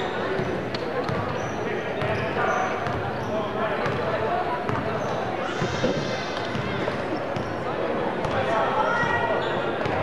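A basketball being dribbled on a hardwood gym floor, over a steady murmur of voices from spectators and players echoing in the gym.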